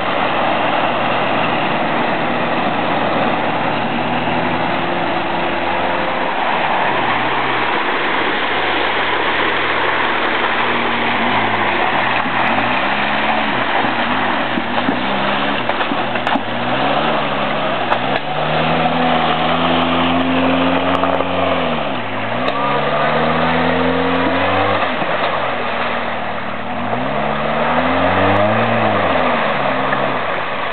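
Jeep Wrangler TJ engine revving up and down over and over as it is driven through deep mud and water, with steady splashing. The revving becomes marked about a third of the way in, with long pulls and quick drops.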